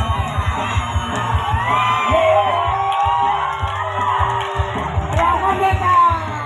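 A crowd shouting, whooping and cheering over loud music with a low pulsing beat.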